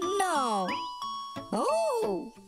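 Children's song: a boy's drawn-out "no" falling in pitch, a tinkling chime with held ringing tones, then a questioning "eh?" rising and falling near the end, over a light backing track.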